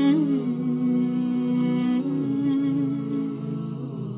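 Vocal music between sung lines: wordless humming holding long, low notes, with a slight bend in pitch near the start, growing a little quieter near the end.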